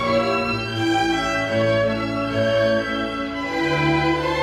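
String orchestra of violins, violas, cellos and double bass playing, bowed held chords that change every second or so at a steady level.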